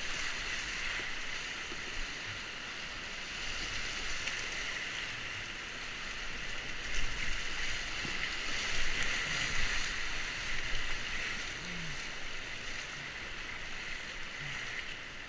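Steady rush of whitewater in a river rapid heard from a kayak, with louder splashing for a few seconds around the middle as the boat runs through the waves.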